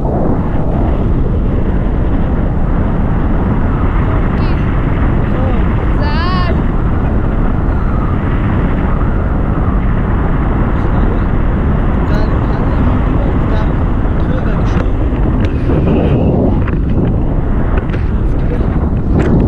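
Wind rushing over the camera microphone in paraglider flight, a loud, steady roar. About six seconds in, a brief wavering high-pitched sound rises above it.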